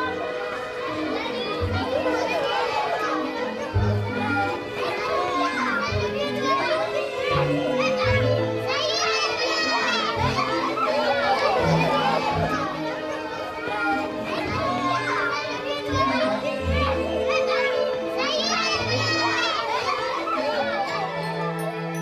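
Music with a steady, repeating bass line under the voices of many young children talking and calling out together as they play.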